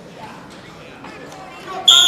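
Wrestling referee's whistle: one shrill blast starting near the end, over the chatter of a gym crowd.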